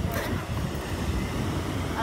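Wind buffeting the microphone in a low, uneven rumble, with ocean surf behind it.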